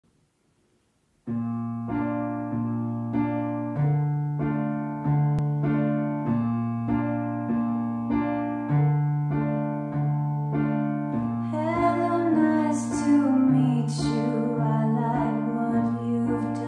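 Piano intro of evenly repeated chords, about three every two seconds, over a slowly changing bass note, starting about a second in. A woman's singing voice comes in near the end.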